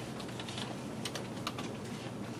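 Typing on a computer keyboard: irregular quick key clicks over a steady low room hum.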